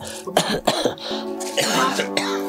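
A man coughing several times in quick succession in the first second, over background music of sustained tones. A voice calls out near the end.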